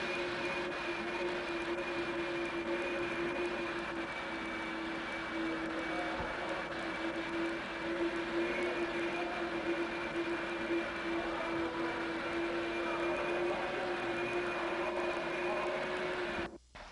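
A steady machine drone: a constant motor hum over a rushing noise, holding the same pitch and level throughout.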